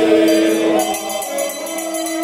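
A congregation singing a hymn together in long held notes. Shortly after the start, a quick, steady metallic jingling joins in.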